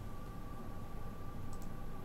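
Low, steady background hum and hiss with a faint steady high tone, and two faint clicks about a second and a half in.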